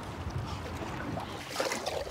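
Steady wind and water noise around a small boat on open water.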